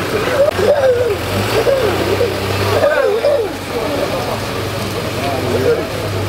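A man speaking loudly into a microphone, his words unclear, over a steady low hum from an idling engine.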